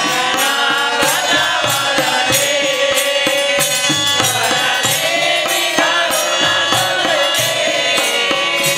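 Men singing a Hindu devotional bhajan together in a chanting style, with a handheld frame drum beating a steady rhythm under the voices.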